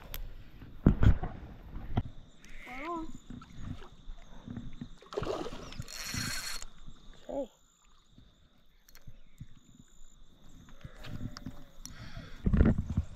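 A trout being landed at the water's edge: low knocks and rustling, a couple of short exclamations, and a burst of splashing about five seconds in as the fish comes into the net.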